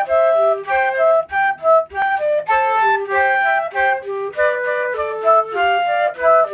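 Two concert flutes playing a duet, two melody lines sounding together in short, separated notes.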